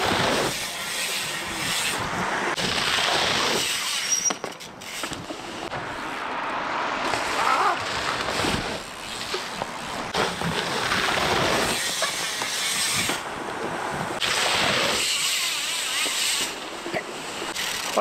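Wind rushing over the microphone as a mountain bike is ridden at speed, rising and falling, with a few brief breaks.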